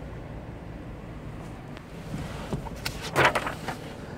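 Low steady background hum inside a car cabin, then rustling and handling noise on the microphone in the second half, loudest about three seconds in, as the phone is swung from the gear shifter to the seat.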